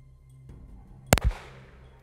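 A single pistol shot about a second in, loud and sharp, followed a split second later by a second deeper thump and a short decaying tail.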